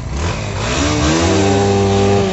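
Motorcycle engine revving: its pitch rises over about the first second, then holds high and steady.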